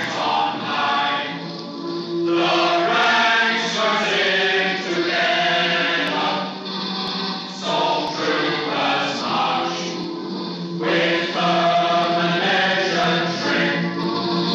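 A choir singing a slow funeral hymn in long, held phrases with short breaks between them.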